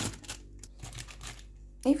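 Faint handling noise: a few light clicks and rustles as an egg is taken out of its carton.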